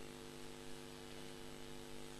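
Faint, steady electrical mains hum with a layer of hiss, in the microphone and sound-system chain during a pause in speech.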